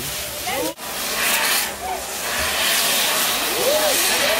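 Firework tower (castillo) spraying sparks with a steady hiss, crowd voices over it. After a brief dropout about a second in, the hiss comes back louder and brighter.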